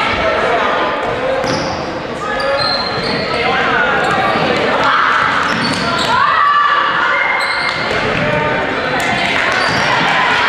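A basketball dribbled on a hardwood gym floor, with shoes squeaking and the voices of players and spectators echoing around the hall.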